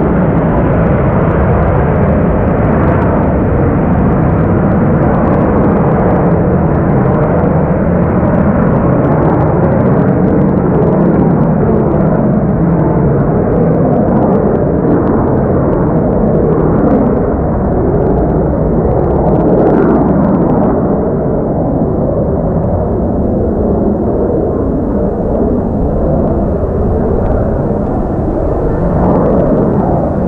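Lockheed Martin F-35B's Pratt & Whitney F135 engine and lift fan running in STOVL mode as the jet flies slowly with its gear down. It makes a loud, steady jet roar that eases slightly past the middle and builds again near the end.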